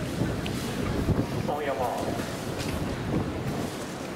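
Wind buffeting the microphone outdoors, a steady low rumble, with a faint voice heard briefly partway through.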